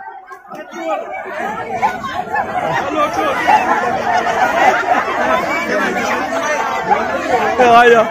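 A crowd of people talking and calling out over one another: a babble of overlapping voices that swells after about a second and stays loud.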